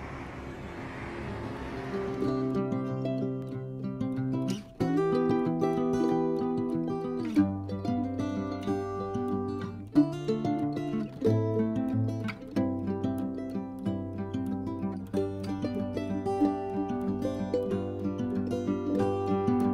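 Background music led by plucked strings such as guitar or mandolin, with notes picked in a steady rhythm. It comes in about two seconds in, after a short stretch of hiss-like noise.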